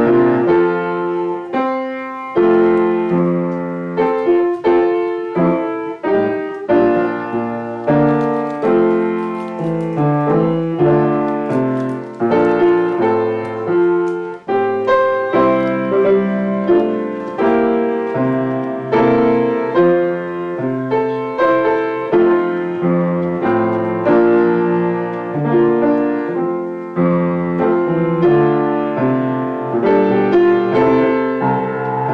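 Solo piano improvisation: a continuous flow of struck notes and sustained chords.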